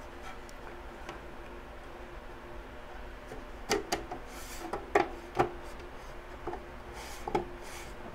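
Rear fan-grille bezel of a Ugreen DXP4800 Plus NAS being handled and fitted back onto the case: rubbing of the panel against the housing, then a run of sharp clicks and knocks as it is pressed into place over the second half.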